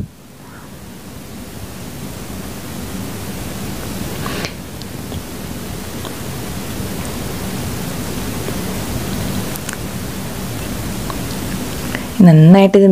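Chopped onions sizzling in hot oil in a saucepan, a steady hiss that builds over the first couple of seconds and then holds. A short knock of the wooden spatula about four and a half seconds in.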